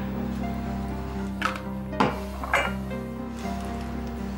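Soft dramatic background music with sustained notes. Three light clinks sound over it about a second and a half, two, and two and a half seconds in.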